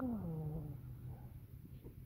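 A man's wordless, drawn-out voice sound, like a coo or hum, that rises briefly and then slides down in pitch, fading out within about a second and a half.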